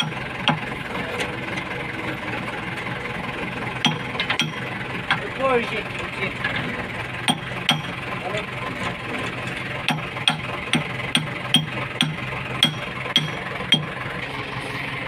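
Diesel engine of a JCB 3DX Super backhoe loader idling steadily. Over it come short, sharp metal-on-metal knocks at irregular intervals, coming more often in the second half, from work on the boom pin as it is seated in its new bush.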